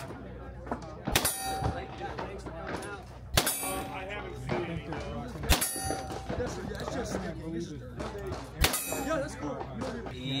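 9mm revolver fired four times at a slow, even pace, roughly two to three seconds apart. Each shot is followed by the ringing clang of a steel target being hit.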